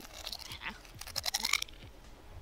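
A person chewing crunchy food, quiet, with a denser run of crunches about a second in.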